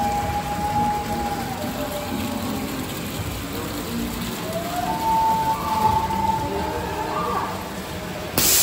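Busy indoor hall ambience: a steady wash of noise with faint distant music notes and murmuring voices.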